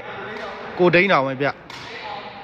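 A voice calls out in a large hall, and shortly before the end a single sharp knock sounds: a sepak takraw ball being kicked.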